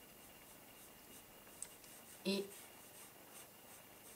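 Faber-Castell Polychromos colored pencil scratching faintly on paper in short repeated strokes as a curved line is drawn.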